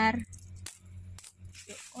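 A pile of 50-cent and one-dollar coins clinking as a hand stirs and picks through them, a few separate sharp clicks of metal on metal.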